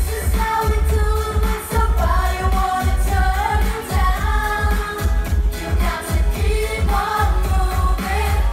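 Live pop music over an open-air PA: a steady, heavy bass beat with vocals singing a melody over it.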